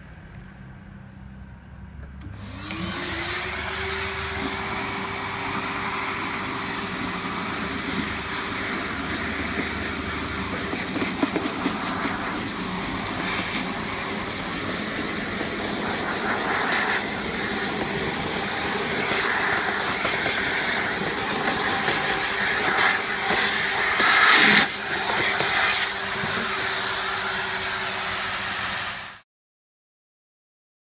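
Two Numatic Henry vacuum cleaners, a 1200-watt red one and a 620-watt green one, start together on high power. Their motors spin up with a rising whine and then run steadily as their hoses suck up sawdust. A brief louder surge comes near the end, and the sound cuts off suddenly.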